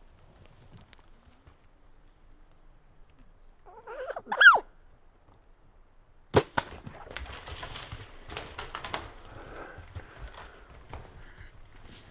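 An elk call about four seconds in, a single pitched call that rises and falls, then about two seconds later the sharp snap of a bow shot. Several seconds of rustling and crackling follow, typical of the hit bull elk running off through brush and deadfall.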